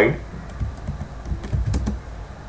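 Typing on a computer keyboard: a handful of separate key clicks, most of them in a quick run in the second half.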